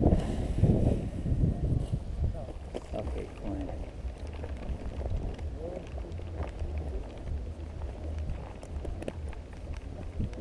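Indistinct voices talking nearby, over wind rumbling on the microphone. The wind and handling noise are loudest in the first two seconds.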